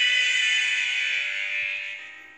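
Karaoke backing music holding a sustained high chord that fades away gradually toward the end.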